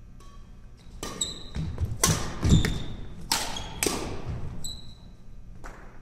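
A badminton rally: several sharp racket strikes on the shuttlecock over a few seconds, with quick footfalls and short squeaks of court shoes on the wooden floor. The loudest moment is a heavy thud about two and a half seconds in.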